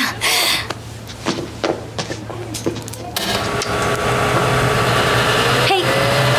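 Large electric fan starting up: a low hum and a few clicks as its controls are worked, then about three seconds in a rush of air sets in and a motor whine slowly rises in pitch as it spins up.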